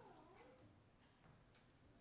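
Faint, brief whimper from an infant during her baptism, wavering in pitch for under a second before fading to near silence.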